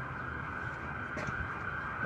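Steady, faint background noise: an even hiss with no distinct event in it.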